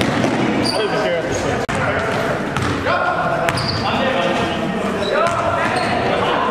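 A basketball bouncing on a hardwood gym floor during play, with short high sneaker squeaks. Players' voices call out indistinctly, and the big gym makes everything echo.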